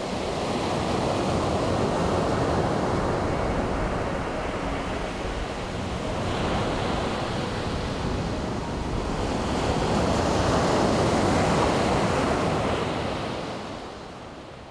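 Sea surf breaking on a beach: a steady rush of waves that swells and eases in slow surges, loudest near the end.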